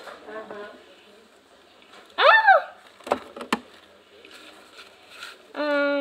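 A high voice gives a short exclamation that rises and then falls in pitch. About half a second later come two sharp clicks of plastic toy parts being handled. A held voiced sound begins near the end.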